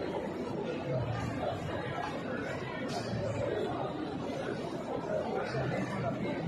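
A crowd of pilgrims talking at once: a steady hubbub of many overlapping voices, with no single speaker standing out.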